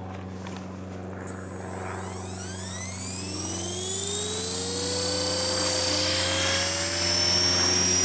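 Blade 300X RC helicopter's brushless motor and rotor spooling up in normal mode: a whine that climbs steeply in pitch from about a second in, then levels off as the head reaches speed, growing steadily louder.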